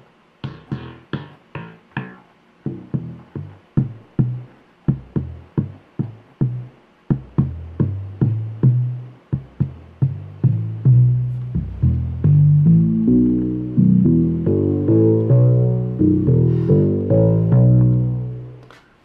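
Arturia Prophet V software synthesizer playing a low bass-line sequence: short plucked notes at first, then from about seven seconds in the notes lengthen and grow brighter as its filter and decay are turned up from a hardware controller.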